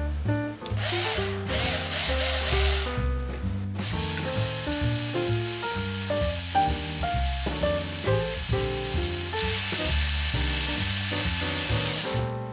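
Background music with a melody and bass line, over a small cordless drill whirring as it spins a cotton swab to stir a mug of water. The drill's whirr comes in about a second in, drops out near four seconds, then runs on again, louder near the end.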